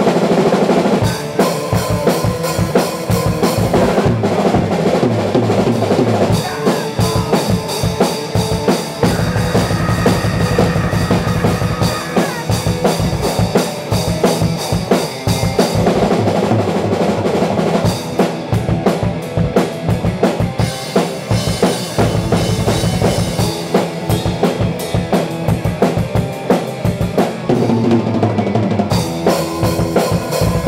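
A band jamming punk/metal on a full drum kit and electric guitar. A fast, steady beat of kick, snare and cymbals runs under guitar chords that change every few seconds.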